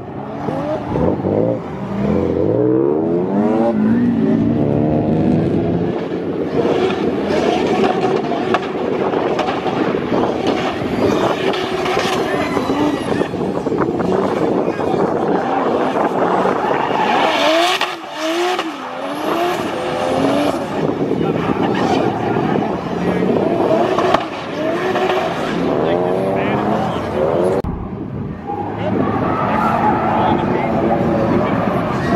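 BMW E36 coupe drifting: its engine revs up and down again and again as it slides, with tyres spinning and squealing on the asphalt.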